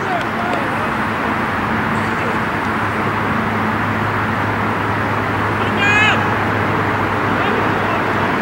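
Soccer players calling out on the field over a steady outdoor noise with a low hum. One loud shout about six seconds in.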